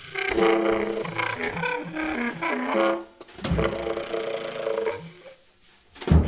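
Bass clarinet and drum kit playing together: the bass clarinet in quick phrases of shifting notes over drum and cymbal strikes, with a heavy low drum hit about midway and the music dropping away briefly near the end.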